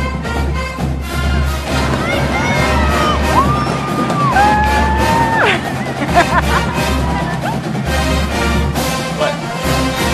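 Marching band music, brass over a steady pounding drum beat, with a few held, sliding whoops rising over it in the middle.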